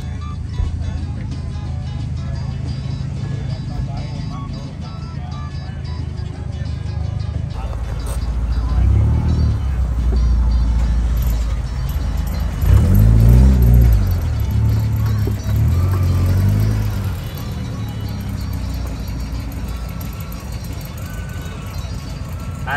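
Background music, then from about eight seconds in a Volkswagen New Beetle's engine running close by. It revs up and down a few times before dropping back.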